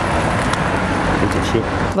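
Road traffic noise from a car passing close by: a steady rush of tyre and engine noise that cuts off abruptly at the end.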